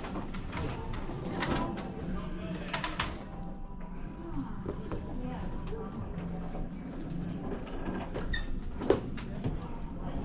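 Thrift-store background noise: indistinct voices with a few sharp clicks, the loudest near the end, and some short high chirps.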